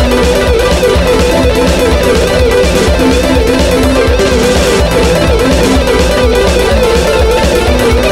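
Electric guitar picking a very fast, continuous single-string run of alternate-picked notes over a backing track with a steady drum beat.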